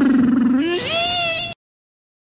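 A long, cat-like wail that dips and then rises in pitch, cut off suddenly about a second and a half in.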